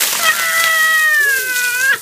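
A man's long, high-pitched yell, held for nearly two seconds, sagging slightly in pitch and breaking off near the end, as a stream of water pours and splashes over him.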